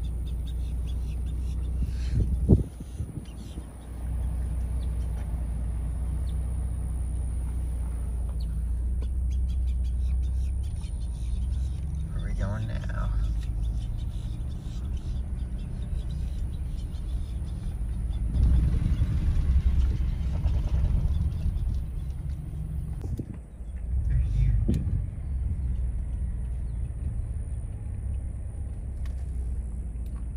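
Car cabin noise while driving slowly along a gravel track: a steady low rumble of engine and tyres, louder for a few seconds in the second half.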